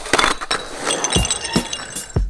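Shattering and clinking sound effect like breaking glass, with high ringing tinkles. About a second in, deep kick-drum thumps start under it as music begins.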